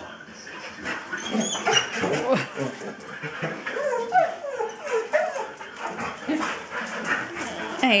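Australian Shepherds whining and crying in excitement, a run of short cries that bend up and down in pitch.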